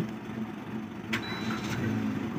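Suzuki Ignis started with its push button: a click a little over a second in, then the small engine running quietly at idle, heard from inside the cabin.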